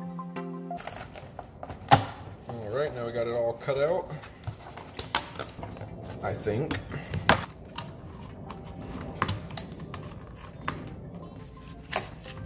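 Utility knife cutting through thick corrugated cardboard: scratchy cutting noise broken by many sharp clicks and snaps as the blade forces through. Background music cuts off about a second in.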